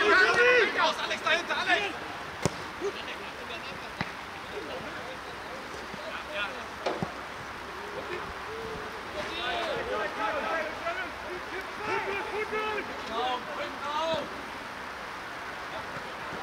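Shouts of footballers on the pitch, loudest at the start and again in the second half, with a few sharp knocks of the ball being kicked, over steady outdoor noise.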